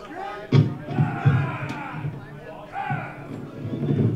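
Indistinct talking in a large hall, with a sharp thud about half a second in and a few softer low thuds after it.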